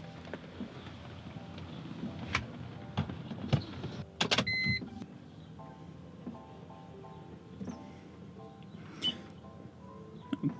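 A few handling clicks as an OBD-II cable is plugged into the car's diagnostic port. About four seconds in comes a short steady electronic beep as the Creator C310 scan tool powers up, all under quiet background music.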